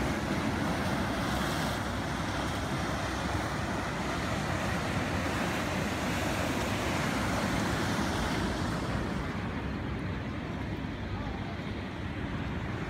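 Sea surf breaking and churning around a rocky shore, a steady rushing wash, with wind rumbling on the microphone.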